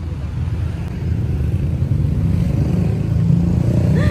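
Low, steady rumble of city street noise, growing louder about a second in, with no single vehicle standing out.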